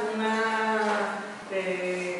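A woman's voice speaking in long, drawn-out syllables.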